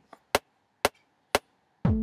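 Three sharp metronome clicks of a recording count-in, evenly spaced half a second apart, then a synth and drum pattern starts playing near the end with steady held notes over repeated hits.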